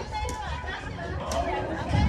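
Several people talking and chattering in a crowd, with one brief sharp tap about a second and a half in.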